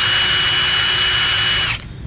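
Milwaukee 2861 M18 FUEL brushless cordless impact wrench running free with no load, a steady high-pitched motor whine with no hammering blows. It stops about three quarters of the way through.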